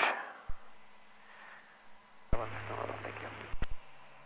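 A short burst of voice over the aircraft's radio, heard through the headset intercom: it opens with a sharp click, carries about a second of speech over a steady hum, and closes with a couple of clicks. A single sharp click comes about half a second in.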